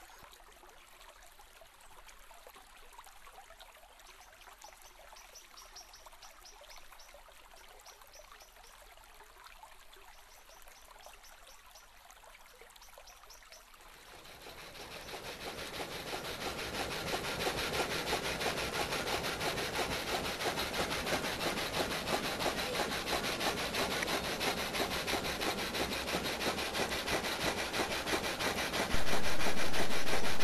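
Faint hiss with light ticking, then, about halfway through, the rapid back-and-forth rasping of a saw cutting wood swells in and runs on steadily: the frame saw (saw gate) of a working model sawmill, which can cut matchsticks and brushwood.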